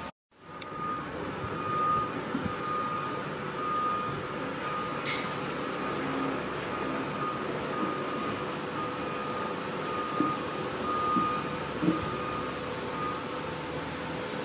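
A faint high electronic beep repeating at an even pace, over steady background noise and a low hum, with a few soft knocks near the end.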